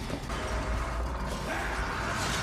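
Sound effects from an anime episode's soundtrack: a steady, noisy, mechanical-sounding effect with a faint held tone, growing brighter and louder in its upper range about a second and a half in.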